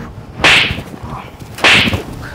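Two sharp whip-crack sound effects, a little over a second apart.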